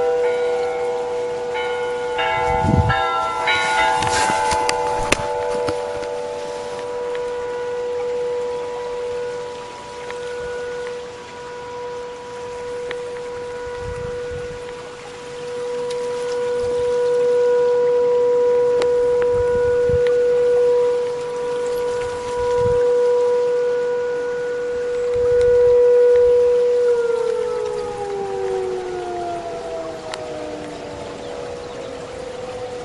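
Siren sounding one long steady tone that swells and fades in loudness, then winds down in pitch near the end.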